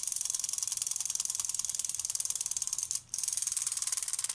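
Clockwork spring motor of a small plastic wind-up Plankton toy running down, a rapid buzzy clicking from its gears as it drives the legs, with a brief break about three seconds in.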